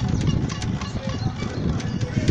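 Low rumbling and irregular rattling clicks from a camera riding over a brick-paved street.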